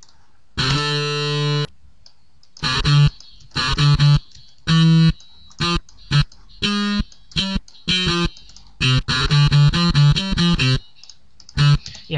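FL Slayer software electric guitar with heavy distortion, sounding short palm-muted notes. One held note comes about half a second in, then single chugs at uneven gaps, and a quick run of chugging notes from about nine seconds in.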